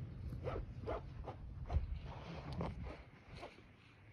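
Nylon rope being pulled hand over hand through a tree saver strap around a tree trunk, a quick zip with each pull, about two or three a second, fading near the end.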